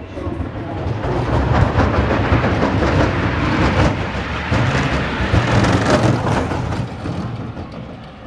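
Wheeled summer bobsleigh rumbling through a banked concrete curve of a bob track. The loud, deep rolling noise holds through the pass and fades near the end.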